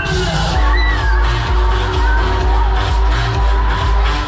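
Loud electronic dance music with a heavy, steady bass beat, playing from a Break Dance fairground ride's sound system while the ride runs.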